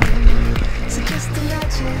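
Background pop music with a steady drum beat and bass; a sung line begins near the end.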